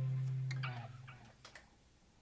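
The worship band's last held chord, low and sustained, dies away within the first second, followed by a few light clicks as the instruments go quiet.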